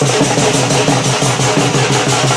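Drums of a wedding band, beaten with sticks, one of them a curved dhol-style stick, keep up a loud, fast, steady beat of about four strokes a second. A constant hiss of crashing metal and crowd noise runs above the beat.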